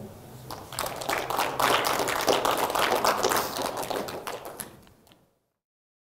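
Audience applauding: many overlapping hand claps that build up about half a second in and fade out about five seconds in.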